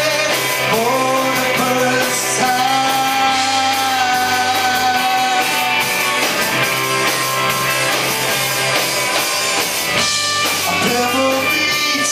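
Live rock band playing: electric guitars and a drum kit, with a man singing lead and holding a long note a few seconds in.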